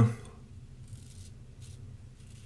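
A few faint, short scratchy strokes of an open-comb double-edge safety razor scraping through lathered stubble of about four days' growth.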